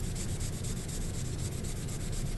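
A cotton pad rubbed over pastel chalk on drawing paper, wiping off some of the chalk to lighten the shade: a steady, dry rubbing on the paper.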